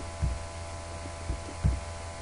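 Steady electrical hum from the recording setup, with three soft, low thumps: one near the start and two close together in the second half.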